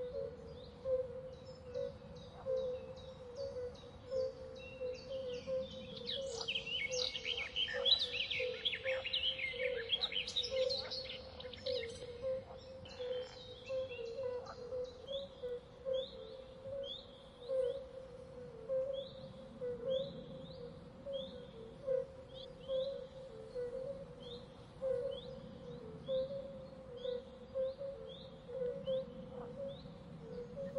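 Birds chirping over a steady droning tone, with a busy run of calls in the first half, then a single short high chirp repeated about once a second.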